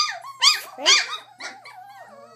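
Four-week-old Goldendoodle puppies whining, with three loud high-pitched cries in the first second, then quieter, shorter whimpers. They are hungry puppies crying for their mother, who has been kept away from them.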